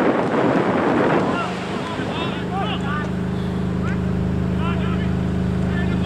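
Wind rumbling on the microphone for about the first second. From about two seconds in, an engine hum runs steadily at one pitch, with faint distant shouting voices over it.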